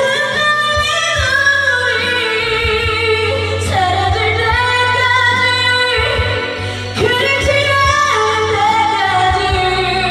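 A woman singing a Korean pop ballad live into a karaoke microphone over the karaoke backing track, with long held notes.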